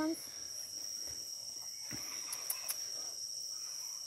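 Steady high-pitched drone of an insect chorus, one unbroken tone, with a few faint clicks near the middle.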